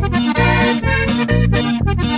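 Norteño corrido music: accordion playing a run of quick notes over a steady, pulsing bass beat.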